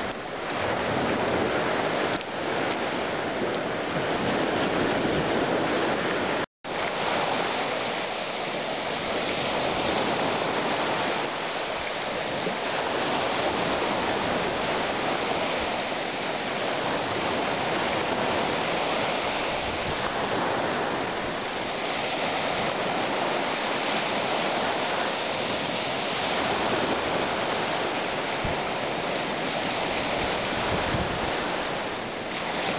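Lake surf washing onto a gravel beach, a steady rushing noise mixed with wind on the microphone. The sound cuts out completely for a split second about six seconds in.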